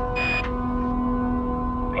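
A short electronic radio beep about a quarter second in, the tone that closes a radio transmission, over a steady low droning music bed.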